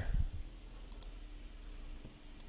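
Two faint computer mouse clicks in quick succession about a second in, over a low steady hum.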